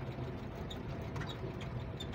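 Low, steady drone of a GAZ-53 truck's V8 engine and tyre rumble, heard from inside the cab while it drives slowly along a dirt field road, with a few faint rattling clicks.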